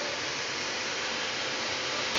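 Steady, even hiss of kitchen background noise with a faint steady hum, unchanging throughout.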